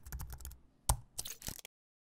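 Computer keyboard typing sound effect: a quick run of key clicks, one louder click just before a second in, then the sound cuts off abruptly.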